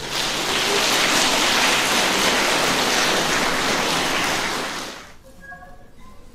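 Audience applause in a theatre for about five seconds, dying away near the end, followed by a few faint held notes from the Chinese orchestra.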